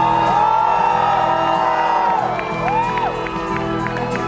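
Live rock band music heard from the audience in a large hall: sustained low chords under high tones that glide up and down in smooth arches, at a steady level.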